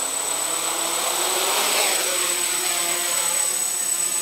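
Small quadcopter's four electric motors and propellers running, with their pitch rising and wavering about halfway through as the throttle is raised and the quad lifts off the grass. A thin steady high whine runs underneath.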